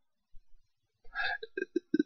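About a second of near silence, then a few short, quiet mouth and throat sounds from a man just before he speaks again.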